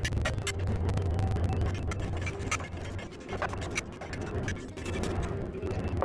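Irregular metallic clicks and clinks of hand wrenches on the exhaust header bolts of a hot rod's engine, over a low rumble and faint background music.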